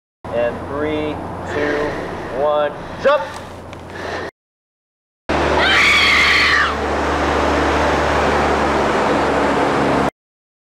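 A high-pitched voice cries out in several short calls, some gliding upward. After a second of silence comes a loud, steady rushing roar of blizzard wind, with a long high shriek over its first second or so.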